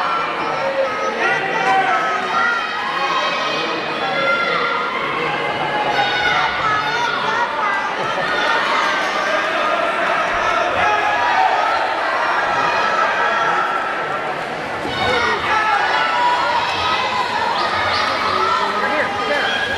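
Crowd of spectators at a swim meet: many voices talking and calling out at once, with a steady loudness and no single speaker standing out, echoing in a large indoor pool hall.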